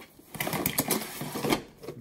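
Rapid irregular clatter of small watercolor paint tubes and a plastic mixing palette knocking together as they are pushed aside by hand, lasting just over a second.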